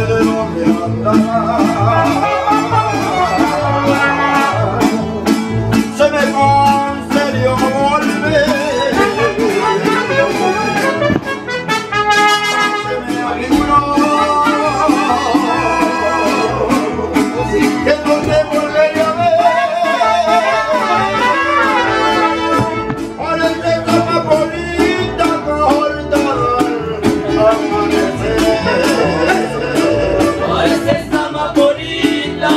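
Mariachi band playing live: trumpets carrying the melody over strummed guitars, with a singing voice.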